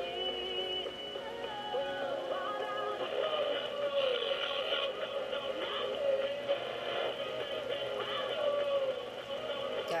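A Sony ICF-A15W clock radio's small speaker playing music with a singing voice from a local FM station. It is received without an antenna, and the reception sounds really bad.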